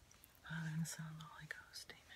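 A woman's voice murmuring softly, a few words half-whispered with hissy s-sounds.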